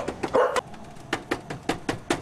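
A fast, irregular run of sharp knocks, about five a second, with a dog barking over them.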